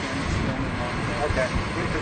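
Mostly people talking, with a steady low rumble and hiss of outdoor vehicle noise underneath.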